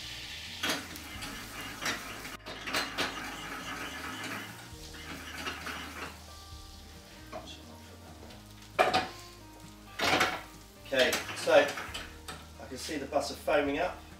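Pan and utensils clinking and knocking on a gas range, over faint sizzling of butter browning in a small saucepan. The knocks come irregularly throughout, a few of them louder in the second half.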